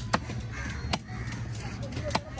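Crows cawing in the background, with two sharp knocks of a cutting knife on a wooden chopping block, about a second apart, over a steady low hum.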